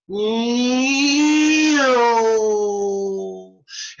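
A man's voice imitating a race car going past: one long held note of a little over three seconds. The note rises slightly in pitch, then drops about two seconds in as the car passes, sounding out the Doppler shift.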